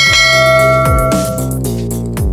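A bright bell chime sound effect strikes at the start and rings out, fading over about a second and a half, over electronic background music with a deep, sliding bass line.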